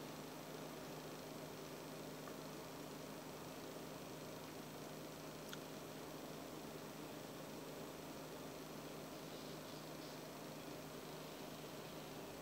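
Small electric box fan running steadily: an even, quiet hiss with a low motor hum, and one faint tick about five and a half seconds in.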